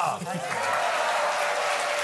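Studio audience applauding: the clapping starts about half a second in, just as a man's voice ends, and then holds steady.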